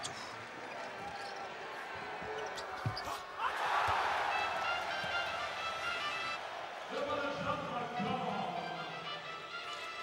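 Basketball game sound under background music: a few sharp knocks of a ball bouncing on the court about three seconds in, then a swell of arena crowd noise, with music carrying on to the end.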